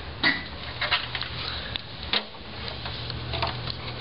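Handling noise: a scattering of short knocks, clicks and bumps, as of a camera and cables being moved about behind a computer, over a steady low hum.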